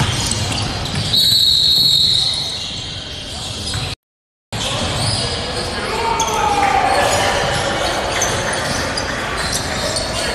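Basketball bouncing on a gym floor, with voices in the hall. A high steady tone lasts about a second near the start, and the sound cuts out completely for half a second about four seconds in.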